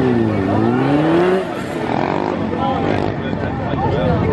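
Suzuki SV650S's V-twin engine revving through a tight low-speed turn. Its pitch dips, then climbs steadily for about a second before dropping away, with further short rises and falls after.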